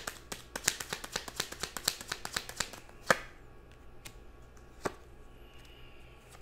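A deck of tarot cards being shuffled by hand: a quick run of card clicks for about three seconds, then a sharper snap and a few scattered soft card taps.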